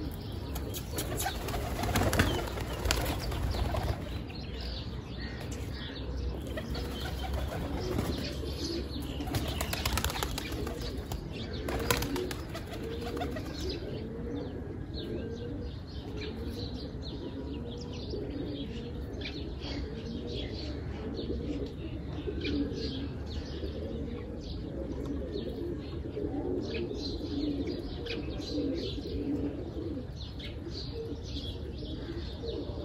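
Domestic pigeons flapping their wings in a few bursts in the first seconds and again around ten to twelve seconds in, then cooing repeatedly through the rest, with faint higher bird chirps throughout.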